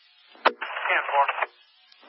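Emergency-services two-way radio: a sharp key-up click about half a second in, then a brief burst of a voice through the narrow radio channel, trailing off into faint static hiss.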